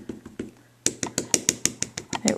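A stamp being tapped lightly and quickly on an ink pad, about seven or eight taps a second, with a short break about half a second in. The several light taps spread the ink evenly over the stamp.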